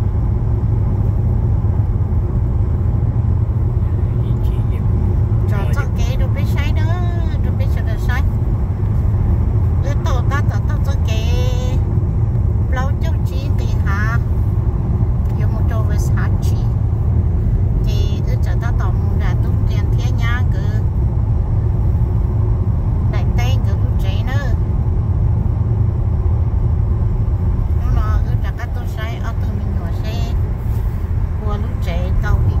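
Steady low road and engine rumble inside the cabin of a car moving at highway speed.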